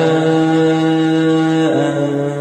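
Male voice reciting the Quran in Arabic in chanted tajwīd style, holding one long drawn-out vowel on 'wa lā' at a steady pitch, which steps down near the end.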